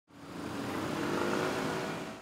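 Urban road traffic: motor scooters and cars driving through a junction, their engines running steadily.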